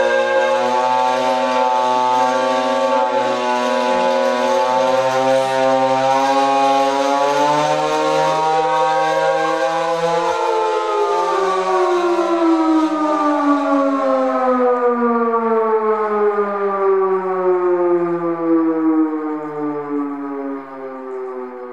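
Hand-cranked siren wailing, several held tones sounding at once. Near the middle one tone rises and falls briefly, and through the second half all the tones slide slowly down in pitch.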